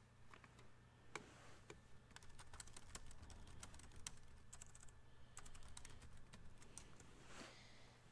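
Faint typing on a computer keyboard: a run of light, irregular key clicks, over a steady low hum.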